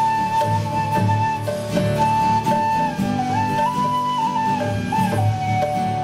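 Devotional kirtan music: a harmonium holds a slow melody in long, stepping notes over strummed acoustic guitar, bass guitar and hand drum.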